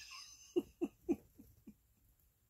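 A man laughing quietly: about five short chuckles in a row, fading toward the end.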